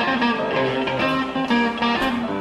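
A blues guitar playing alone, a quick run of single notes and chords with no bass or drums under it, as the intro of a live fast blues number.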